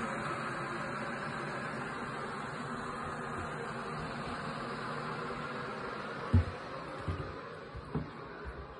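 Glass electric kettle switched on and heating water: a steady rushing hiss that fades near the end, with a couple of dull thumps late on.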